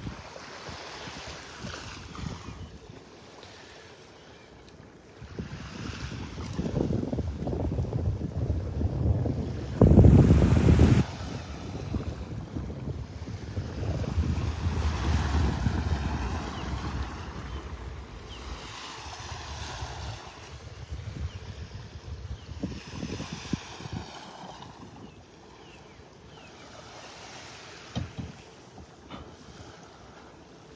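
Wind buffeting the microphone over small waves lapping on a sandy shore, with one loud gust about ten seconds in.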